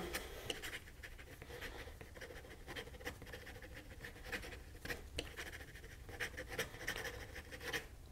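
Fine steel nib of a Tianzi Urushi and Raden fountain pen writing fast on paper: faint, irregular scratching of short pen strokes. The nib writes without skipping.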